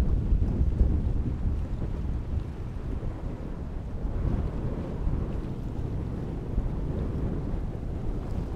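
Strong wind buffeting the microphone with an uneven low rumble beside choppy open water, the wash of small waves mixed in underneath.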